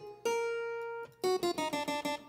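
Logic Pro's harpsichord virtual instrument previewing single notes as they are placed in the piano roll: one held note about a quarter second in, then a quick run of short notes stepping in pitch in the second half.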